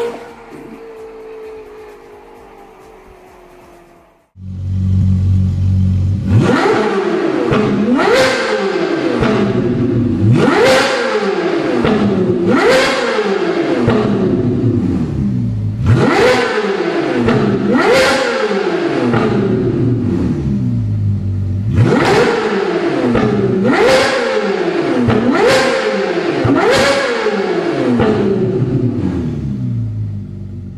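The fading tail of a car passing by, then a Ferrari 458 Italia's naturally aspirated V8 with an iPE Innotech performance exhaust, standing still. It idles with a deep rumble and is blipped to high revs about ten times, each rev climbing sharply and then dropping back to idle.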